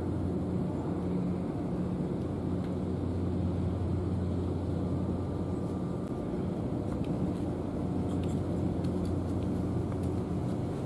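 Steady low mechanical hum of distant engines or machinery across the harbour, with an even outdoor background.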